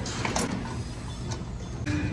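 Gym ambience: background music with several sharp clanks of workout equipment, one about half a second in and another near the end.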